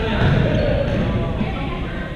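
Indistinct voices over low thudding in a reverberant sports hall.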